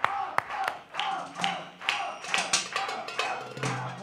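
Scattered hand claps, irregular at about two or three a second, with voices underneath.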